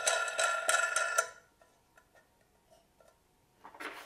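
A steel nut being spun by hand down a threaded rod against stacked washers inside terracotta pots: rapid metallic ticking with a ringing tone, stopping after about a second and a half.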